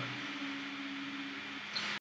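Room tone: a steady hiss with a faint low hum, and a brief short noise near the end.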